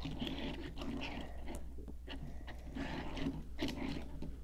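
Faint handling noise as small die-cast metal toy cars are moved about on a hard floor: soft scrapes and rustles with a few light clicks.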